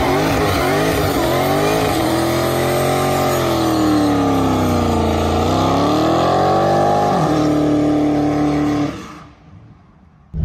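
Dodge Charger Hellcat Redeye's supercharged 6.2-litre Hemi V8 doing a burnout, with a rear tyre spinning on the pavement. The driver thinks only one tyre spun. The revs swing up and down, settle to a steady hold at about seven seconds, and the sound cuts off abruptly just after nine seconds.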